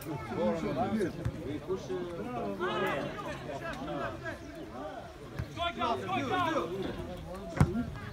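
Several men's voices calling and shouting over one another across a football pitch, with one sharp thud near the end as the goalkeeper kicks the ball.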